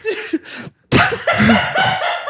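A man laughing helplessly: short breathy, gasping bursts of laughter, broken by a sudden sharp burst of breath about a second in.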